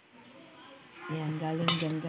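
A utensil scraping and clinking against a stainless steel bowl while batter is scooped out, with one sharp clink near the end. A low, steady humming tone starts about a second in.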